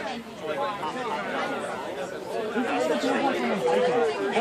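Several people talking at once in the background, an overlapping chatter of voices with no single clear speaker.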